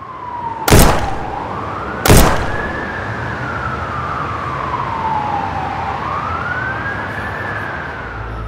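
An emergency-vehicle siren wailing in slow rising and falling sweeps, with two loud sharp bangs, one under a second in and one about two seconds in.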